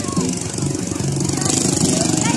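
Busy crowd sound of adults and children talking and calling, mixed with a motorcycle engine running.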